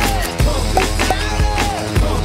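Background music with a steady beat and deep bass under a repeating sliding melodic figure.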